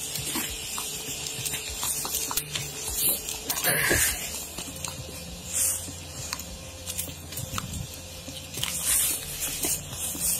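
Rustling and knocking of a body-worn camera on the wearer's clothing while walking, with scattered footsteps and a louder rustle about four seconds in, over a steady hiss and faint low hum.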